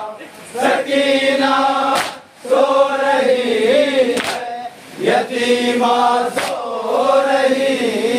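A group of men chanting a Shia nauha (lament) in unison over a microphone and loudspeakers, in long held, slowly wavering phrases that pause every second or two. A sharp slap of matam, chest-beating in time with the lament, cuts in about every two seconds.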